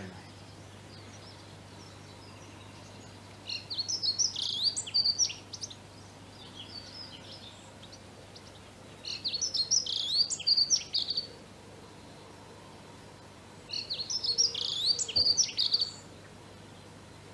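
A songbird singing phrases of quick, varied high notes, each about two seconds long, roughly every five seconds, with a fainter phrase between the first two.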